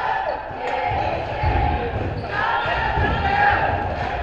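A basketball bouncing on a hardwood gym floor in repeated thuds as play moves up the court, with indistinct voices echoing around the hall.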